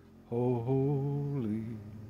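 A man singing one long, drawn-out phrase with no clear words. His voice drops in pitch and fades out near the end.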